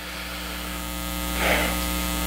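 Steady low electrical mains hum, swelling slightly in the first second, with a brief soft rustle-like noise about a second and a half in.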